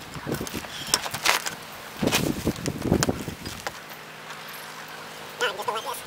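Threaded half-inch metal plumbing pipe being cranked round in its fittings by hand: irregular scrapes and knocks of metal for the first few seconds, then quieter. A brief voice near the end.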